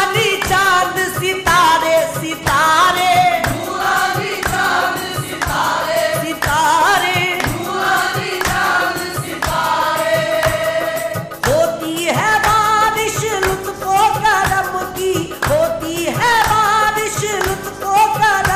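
Qawwali: voices singing a wavering, ornamented melody together, over hand percussion that keeps a steady beat.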